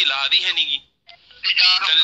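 A man talking over a telephone line in a recorded call, with a short pause about a second in.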